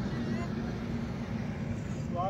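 Steady low vehicle rumble with people talking faintly in the background.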